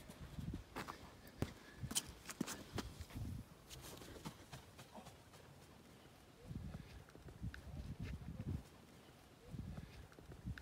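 Faint knocks and thumps: a run of sharp clicks over the first few seconds, then groups of soft low thumps, several a second, in the second half.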